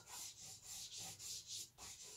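Soft pastel stick rubbed across pastel paper in short strokes, a faint scratchy rubbing repeated about five times.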